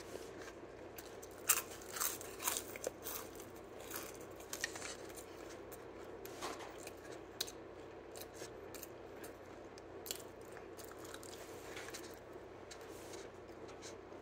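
Crunchy bites and chewing of a crisp thin-crust cheese pizza slice: a run of loud, crisp crunches in the first few seconds, then softer, scattered crunching as the chewing goes on.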